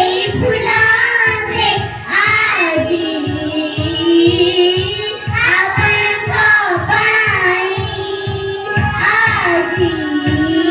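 A group of young children singing a song together, over a steady low beat of about three beats a second.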